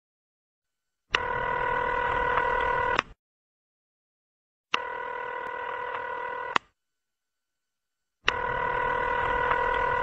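A telephone ringing: three rings of about two seconds each, separated by pauses of about a second and a half. Each ring is a steady tone that starts and stops abruptly.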